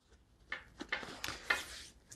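A laptop being slid out of the padded sleeve in a backpack's lid: nylon fabric rustling and rubbing against the laptop's case, with a few light knocks. It starts about half a second in.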